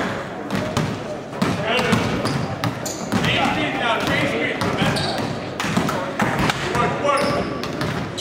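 Basketballs bouncing on a hardwood gym floor, a run of repeated short thuds in a large gym, with voices in the background.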